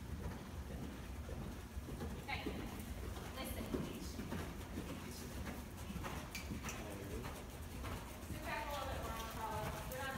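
A ridden horse's hoofbeats, dull thuds on the sand footing of an indoor arena, as it moves around the ring and passes close by near the end. Indistinct voices are heard beneath it.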